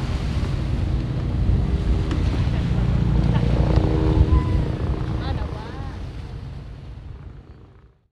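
Wind rumbling on the microphone over a faint steady motor drone from boats on the river, with a few distant voices; it all fades out over the last three seconds.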